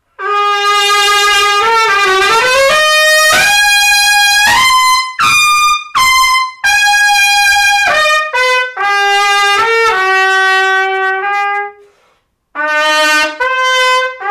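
Solo trumpet played loudly: a string of held notes stepping up and down, with a dip and slide in pitch about two seconds in and a short break near the end before the playing picks up again.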